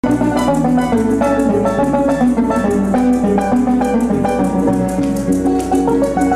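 Llanero joropo music played on plucked strings with maracas shaking at a fast, steady beat. It starts abruptly out of silence.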